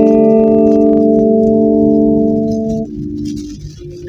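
LTD AX-50 electric guitar on its neck pickup, played through a Boss Blues Driver BD-2 overdrive pedal into a Quake GA-30R amp. A picked chord is left ringing with slight breakup rather than a fully clean tone. Its upper overtones fade about a second in, and the chord dies away just under three seconds in.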